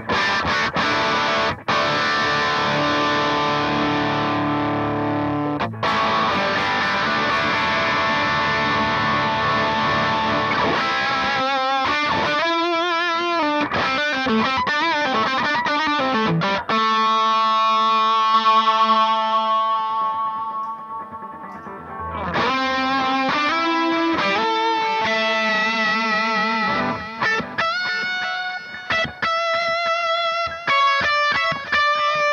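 Electric guitar played through a Suhr Eclipse overdrive pedal in a Line 6 POD GO's effects loop, with a distorted tone: held chords for about the first ten seconds, then lead notes with vibrato, one long sustained note that fades out, and picked notes near the end.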